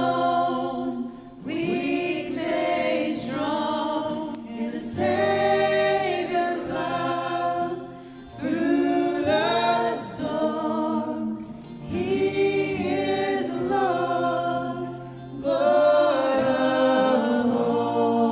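A worship song: a male lead singer and a choir singing together over acoustic guitar, in sung lines with short breaks between phrases.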